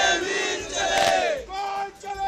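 A crowd of men shouting a Shiv Sena protest slogan in unison. The group shout falls in pitch and drops off about one and a half seconds in.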